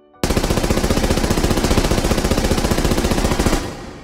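A long burst of rapid automatic gunfire, like a machine gun, starting abruptly and running about three and a half seconds before dying away in an echo.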